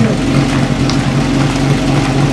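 Portable fire pump's engine idling with a steady, even hum, ready before the attack starts.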